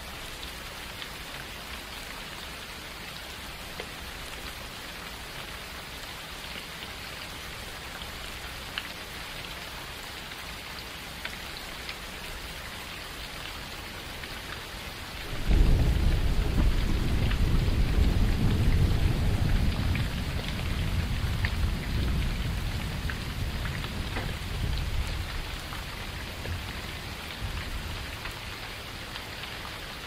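Steady rain falling, with occasional single drops ticking. About halfway through, a roll of thunder breaks in suddenly as the loudest sound, then rumbles away over about ten seconds.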